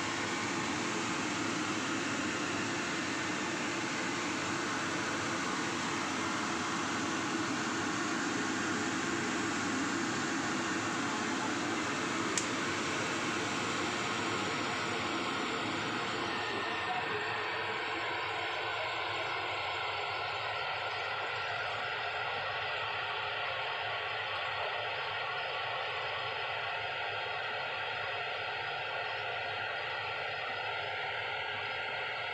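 Battered banana slices frying in hot oil in a stainless steel pan, a steady sizzle. There is a single sharp click about twelve seconds in, and from about seventeen seconds the sizzle gets thinner and a little softer.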